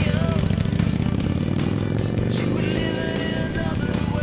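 Cruiser motorcycle engine running with a fast, even pulse, mixed with rock music and a singing voice.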